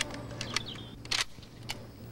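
Faint clicks of guns being handled on the firing line, the sharpest about a second in, over a steady low hum.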